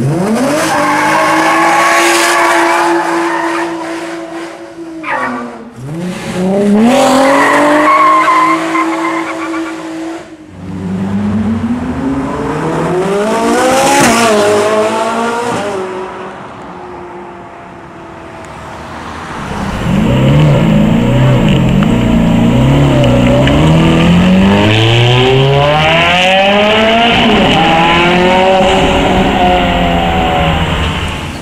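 Sports car engines accelerating hard. First a Nissan 350Z's V6 pulls away, revving up with a gear change about five seconds in. Later another engine climbs, then falls in pitch as it passes near the middle, and in the last third a high-revving engine climbs through several quick upshifts.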